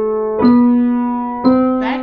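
Piano playing a slow C major scale, hands together, each note struck about once a second and left ringing as it fades. A short falling vocal sound comes near the end.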